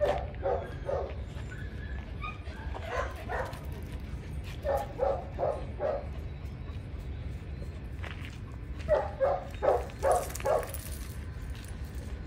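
Dog barking during rough play, in four short runs of three to six quick barks each, the last run near the end the loudest.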